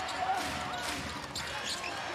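Basketball being dribbled on a hardwood court, with crowd voices in the arena behind.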